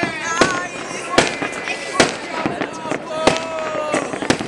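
Fireworks going off across a city: about half a dozen sharp bangs at irregular intervals of roughly half a second to a second.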